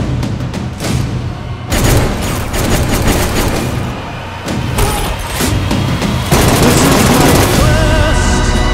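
Action-trailer music with rapid bursts of gunfire and heavy booming hits, growing louder and denser toward the end.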